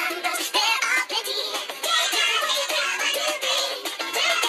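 A children's counting song playing: music with sung vocals throughout.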